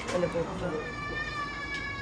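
A domestic animal's high, steady whining cry, starting just under a second in and held at one pitch.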